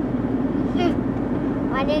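Steady drone of a car in motion heard from inside the cabin: an even low hum with road noise under it.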